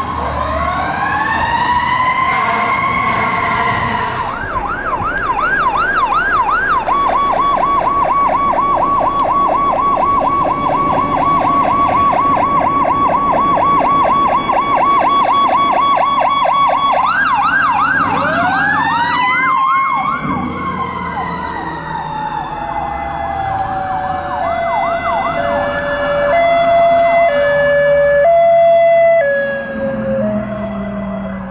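Fire engine sirens cycling through wail, yelp and a fast warble. Partway through, a mechanical siren winds up and coasts slowly down under the yelp. Near the end come long, loud, steady horn blasts, likely the truck's air horns.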